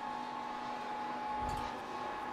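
Steady hum with a thin whine from the geared-down electric motor that turns the windmill rotor prototype, and a dull thump about one and a half seconds in.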